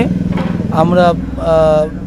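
A man speaking in short phrases over a steady low engine-like hum.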